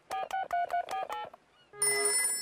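Mobile phone keypad tones being dialled: a quick run of about seven short two-tone beeps. After a short gap, a ringing sound starts just before the end.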